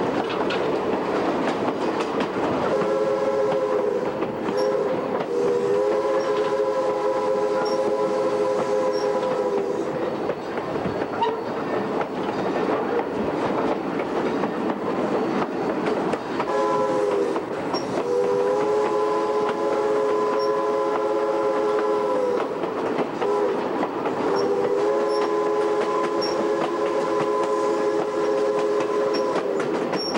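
Steam whistle of a 2-8-2 steam locomotive blowing long blasts in three groups, each a chord of several notes sounding together, over the steady rumble and clatter of the coach's wheels on the rails.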